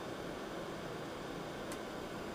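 Steady low hiss of room tone, with one faint click near the end.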